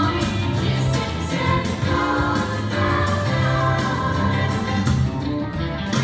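A girls' show choir singing a song together over a steady bass line.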